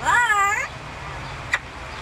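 Amazon parrot giving one short wavering call, its pitch sliding up and down, about two-thirds of a second long. A single sharp click follows about a second and a half in.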